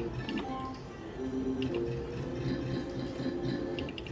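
Book of Ra slot machine playing its free-spin music as the reels spin, with a few sharp clicks and short chime tones as the reels stop.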